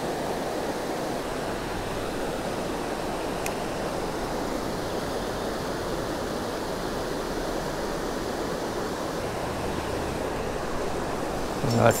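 Steady rush of creek water running over a shallow rocky spillway.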